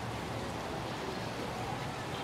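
Steady outdoor background noise, an even hiss with no distinct sounds standing out.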